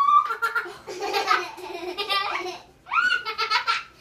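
Young children laughing and giggling in high-pitched bursts, one long run of laughter and then a second shorter one near the end.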